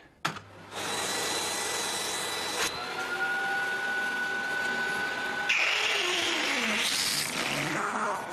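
Vacuum cleaner running, a steady rushing motor noise with a whine over it. The whine changes pitch abruptly about a third of the way in and again past the middle, then glides up and down near the end.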